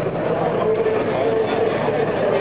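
Loud, steady din of a rock concert crowd, with amplified music and voices blending together.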